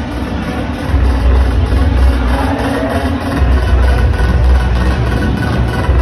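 Music played loudly over stadium loudspeakers, its heavy bass pulsing and distorted on the phone microphone.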